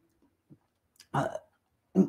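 A pause in a man's talk, broken about a second in by a short hesitation sound, "uh", and by the start of his next word at the end.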